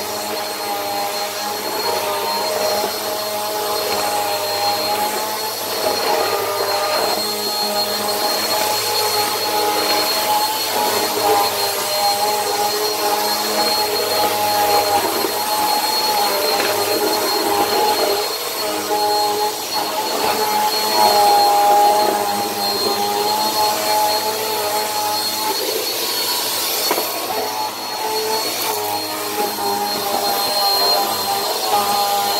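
Bissell PowerForce Helix upright vacuum cleaner running on a hard tile floor, a loud steady motor whine that wavers slightly in pitch as the vacuum is pushed back and forth.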